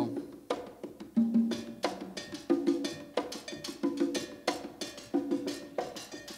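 Congas and timbales playing a Latin jazz groove together: the timbales' sharp strikes ride over the congas' pitched tones in a steady rhythm.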